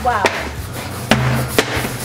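Metal dough cutter chopping down through patty dough onto a work table: three sharp knocks.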